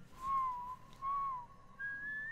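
Someone whistling a short tune in clear single notes: two short notes, then a higher, longer note starting near the end.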